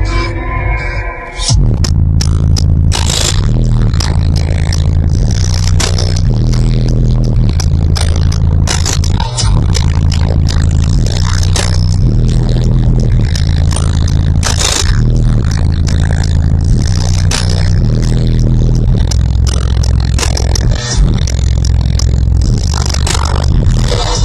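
Bass-heavy music played loud through a car stereo with a single 12-inch subwoofer in the trunk, heard inside the cabin. The music switches to a new track about a second and a half in, with deep bass notes stepping between pitches under sharp beats.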